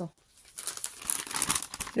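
Paper crinkling and rustling as a small sticker notepad is handled and its sheets are moved, starting about half a second in and growing louder.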